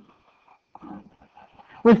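A pause in a person's speech holding only a few faint, short, indistinct sounds, then the voice resumes near the end.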